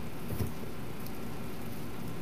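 Steady room hum of an air conditioner, with one faint click about half a second in.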